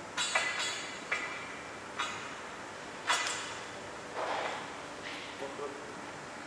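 Metal clinks and clicks as a locking pin is slid through the tire rack's pole socket and a keyed lock barrel is handled: about six sharp, briefly ringing clinks in the first three and a half seconds, then softer handling sounds and a few light ticks.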